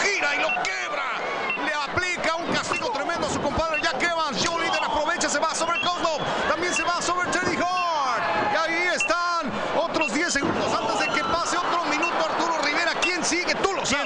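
Voices talking over crowd noise, with many sharp thuds of wrestlers hitting the ring canvas and cage.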